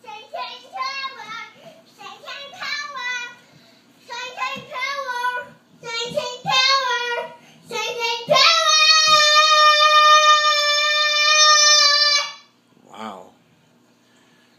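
A two-year-old girl singing in short, high-pitched phrases, then holding one long high note for about four seconds.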